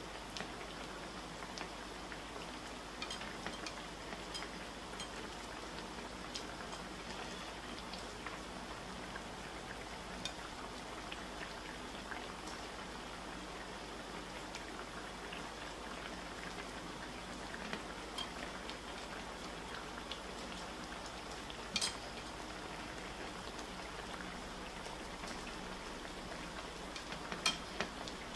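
Rice broth bubbling steadily in a wide pan on high heat, with a few light clicks of cooking utensils, the clearest about two-thirds of the way through and near the end.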